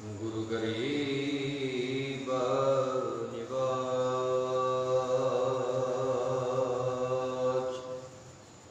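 A man's voice chanting Gurbani, Sikh scripture, into a microphone in a slow intoned recitation. The voice slides at first, then holds one long steady note that stops just before the end.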